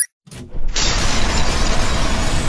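Cinematic explosion sound effect from an animated outro: a short metallic click, then a deep rumble that swells about three-quarters of a second in into a loud, steady rush of noise.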